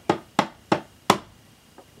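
Four sharp knocks on a hard surface, evenly spaced about a third of a second apart: a child knocking to show how hard as rock something feels.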